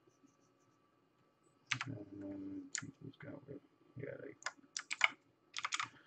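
Sharp computer keyboard key clicks, single and in quick runs of three or four, starting nearly two seconds in. Short, low sounds of a man's voice come between them.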